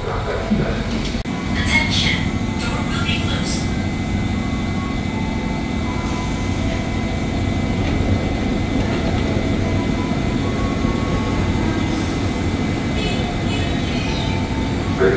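Electric commuter train idling at a platform: its equipment gives a steady low hum. A few clicks come early on, and near the end a brief hiss and clatter as the doors close.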